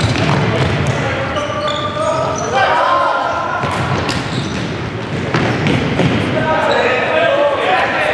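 Futsal match in a sports hall: players shouting to each other, with the thuds of the ball being kicked and bouncing on the wooden floor, all echoing in the hall. The shouts come about two and a half seconds in and again near the end.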